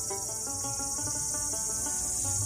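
Steady high-pitched drone of insects, with faint music underneath.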